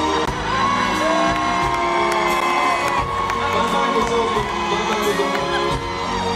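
Live pop band music over a concert PA, with the audience cheering over it.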